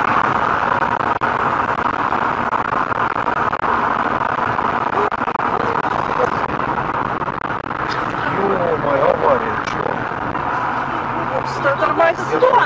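Steady road and engine noise of a moving car heard from inside the cabin. Muffled voices talk over it in the second half.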